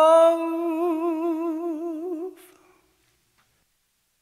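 The song's closing held vocal note, sustained with a wavering vibrato, which ends a little past two seconds in and dies away into silence.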